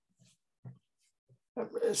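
A pause in a man's speech, with a few short, soft sounds from his voice behind his hand, like a stifled chuckle. His talking resumes near the end.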